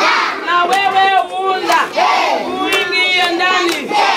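A group of young children chanting and shouting together in chorus, their high voices holding and sliding notes, with sharp claps through it.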